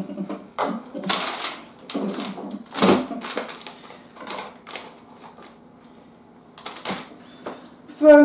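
Wooden skewers clicking and tapping against each other and the tabletop as they are handled and fitted into a skewer-and-sweet tower: an irregular scatter of light clicks with a few brief rustles.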